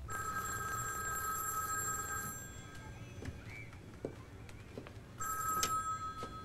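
Wall payphone ringing: a first ring lasting about two and a half seconds, then a second ring starting about five seconds in.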